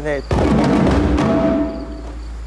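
Several djembes struck by hand together, playing a practice rhythm pattern that starts about a third of a second in, right after a spoken count.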